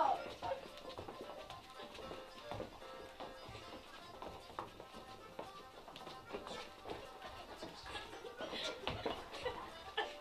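Irish reel music playing back, with the footfalls and light taps of several dancers doing hop steps on carpet.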